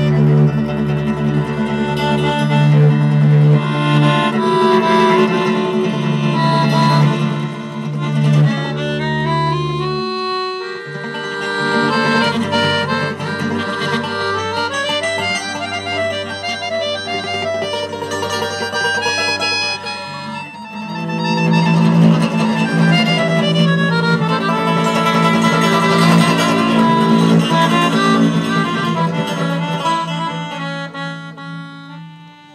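Small acoustic band playing a tune live on accordion, upright double bass, guitar and a wind instrument. The low end thins out about ten seconds in and fills out again about twenty-one seconds in.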